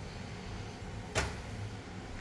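Low room noise with a single short knock about a second in.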